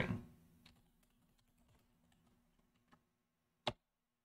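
Faint computer keyboard typing: a few quiet, scattered keystrokes, with one sharper click near the end.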